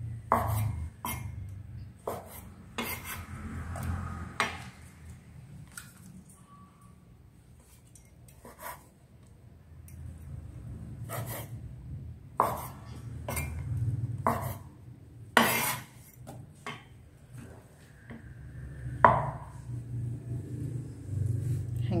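Cleaver knocking on a wooden chopping board while halving soaked shiitake mushrooms: a dozen or so separate sharp knocks at an irregular pace, sparse in the middle. Light clinks of the pieces landing in a metal bowl, over a faint steady low hum.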